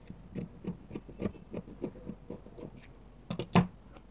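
Dressmaking scissors cutting through fabric: a run of short snips, about three a second, with two louder clicks near the end.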